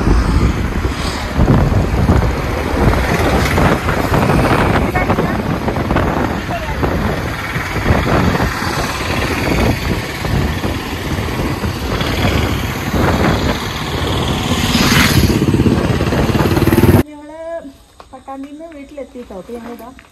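Wind rushing and buffeting over the microphone on a moving two-wheeler, with engine and road noise underneath, loud and gusty. It cuts off suddenly about 17 seconds in, giving way to quieter talking.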